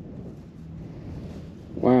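Wind rumbling on the microphone, with a faint steady low hum underneath.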